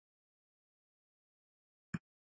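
Near silence, broken near the end by one short click: a computer keyboard key being tapped.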